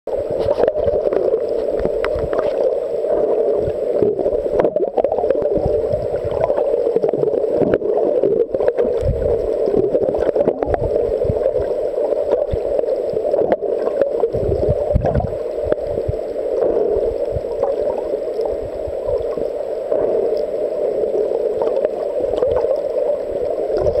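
Muffled underwater noise through a camera's waterproof housing: a steady mid-pitched hiss with irregular low thumps of water moving against the housing.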